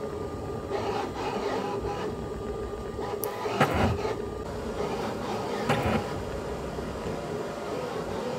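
FDM 3D printer printing: its stepper motors whine in pitches that shift and glide as the print head moves, over a steady fan hiss, with a few faint clicks.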